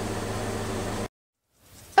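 Steady hum and hiss of background room noise, like a fan or air conditioner running, which cuts off abruptly to silence about halfway through.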